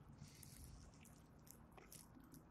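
Near silence: faint outdoor background noise with a few faint ticks, in a pause between shouted commands.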